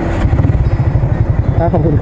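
Honda Wave 125i's single-cylinder four-stroke engine idling with an even low pulse, which grows stronger about a quarter second in.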